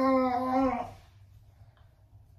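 A person's voice holding one long, steady note on a single pitch, ending about a second in.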